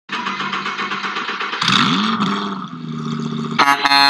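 Vehicle engine running, its pitch swooping up and back down about one and a half seconds in, then a loud vehicle horn blast near the end.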